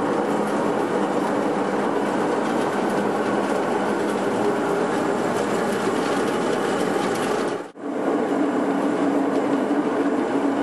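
Motorized grape crusher-destemmer running steadily, a dense mechanical clatter as it crushes red wine grapes and strips their stems. The sound breaks off for a moment about three-quarters of the way through, then carries on.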